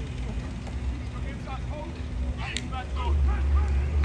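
Faint, distant voices of people talking and calling out across an outdoor field, over a low rumble that swells about three seconds in.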